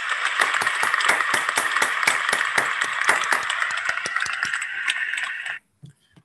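Applause heard through a video call: a dense, steady patter of hand claps that cuts off abruptly near the end.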